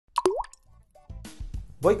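A quick plop sound effect with a swooping pitch from the logo sting, then soft background music setting in about a second later.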